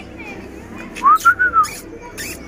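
A single whistled note about a second in, rising and then falling, over faint background voices.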